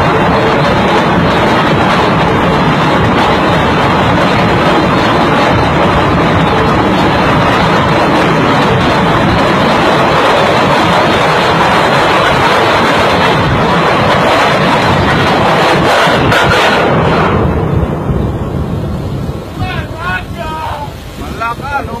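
Anchor chain running out uncontrolled through a ship's windlass, a loud steady noise with the windlass brake smoking and sparking as it fails to hold the chain. About seventeen seconds in the noise drops away suddenly, and voices follow.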